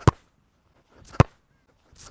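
Football kicked with Skechers football boots: two sharp strikes of boot on ball about a second apart, each with a soft scuff just before it.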